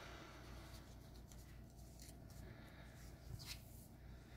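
Near silence: room tone with a few faint handling sounds of hands touching foil booster packs, the most noticeable a small rustle a little after three seconds in.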